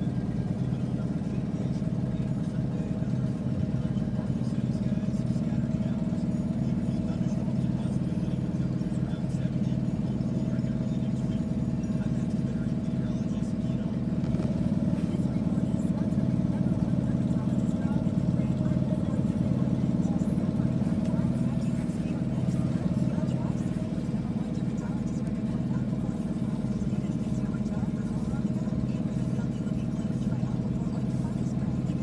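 Steady car-cabin hum from the engine and road while riding in traffic, with indistinct talk under it.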